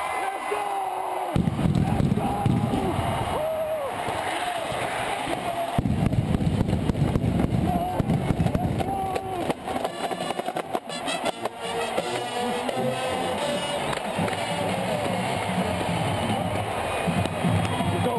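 Stadium crowd noise and a marching band playing, with drum hits among it, picked up by a helmet-mounted camera's microphone. A heavy low rumble from wind and movement on the microphone cuts in and out.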